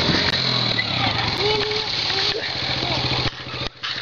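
Small engine of a child's four-wheeler (ATV) running, its low hum strongest in the first second and then fading, under a steady rushing noise.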